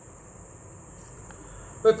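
A steady high-pitched tone runs unbroken over faint room hiss. A man's voice starts again just before the end.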